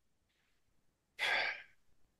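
A man sighing: one short, breathy exhale a little past halfway through, after about a second of near silence.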